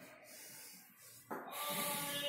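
Chalk scratching on a blackboard as rectangles are drawn. A louder sound with several steady tones comes in near the end.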